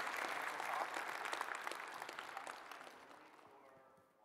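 Audience applauding, the clapping dying away over the last second or so.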